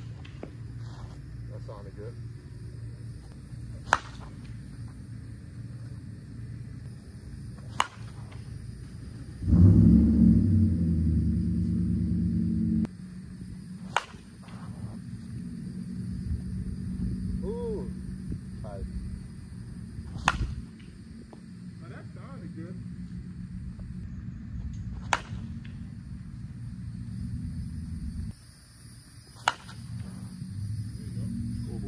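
Axe Inferno senior slowpitch softball bat hitting pitched softballs: six sharp cracks of contact, one every four to six seconds. Under them runs a steady low rumble, louder for about three seconds starting about ten seconds in.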